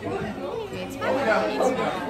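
Chatter: several voices talking at once around a dinner table, no single speaker standing out.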